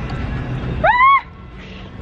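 A restaurant table pager vibrating with a low buzz while held close to the microphone, signalling that the table is ready. About a second in comes a short, high-pitched vocal 'ooh' that rises and falls.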